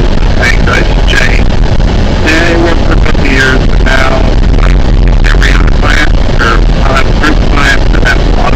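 Loud, steady rumble of a moving road vehicle picked up by a camera mounted on it, with many short high-pitched chirps repeating throughout.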